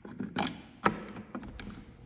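A plastic thermostat body being pressed and snapped onto its wall base: a few sharp plastic clicks, the loudest a little under a second in, then lighter taps.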